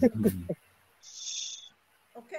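A voice trailing off over a video-call line, then a short, soft hiss about a second in, with the line dropping to dead silence around it.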